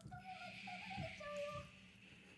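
A child's faint, high whimpering from the anime's soundtrack, wavering in pitch, with a long hushing "shh" under it.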